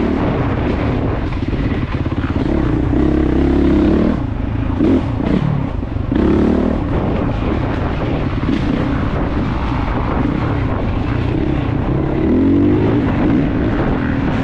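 Off-road motorcycle engine heard from a helmet-mounted camera, revving up and down continuously as the rider works the throttle over rough trail, with rising surges in pitch about three, six and twelve seconds in.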